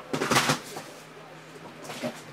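Thin plastic pack wrapper crinkling as it is handled, with a loud rustle in the first half second and another brief one near the end.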